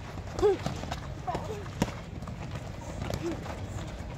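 Boxing gloves landing in a few sharp smacks during sparring drills, mixed with short shouted voice calls, one of them loud near the start.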